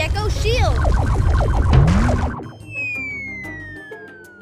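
Cartoon action soundtrack: music over a heavy rumbling sound effect that cuts off abruptly a little past halfway, followed by a long, steadily falling whistle tone.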